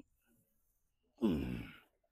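A man's loud voiced exhale, a groaning sigh falling in pitch, lasting about two-thirds of a second a little past the middle: effort breathing while straining through leg curl reps.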